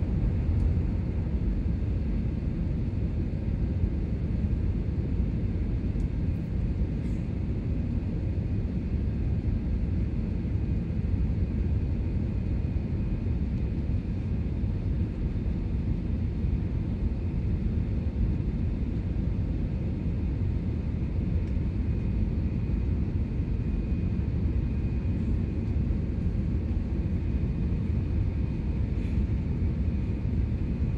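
Steady cabin noise of an Airbus A320 jet airliner climbing after take-off: a deep, even rumble of the jet engines and rushing air, with a faint high whine.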